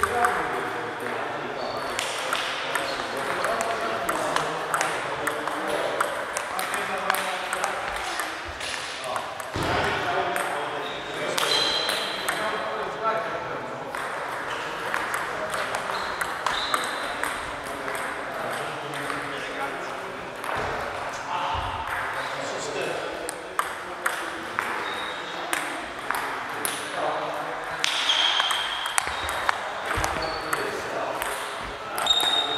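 Table tennis balls clicking sharply off bats and tables in quick, irregular rallies on several tables at once, with a murmur of voices underneath.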